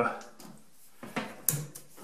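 A few light clicks and knocks from a coiled appliance power cord being handled and moved by hand, the sharpest about halfway through.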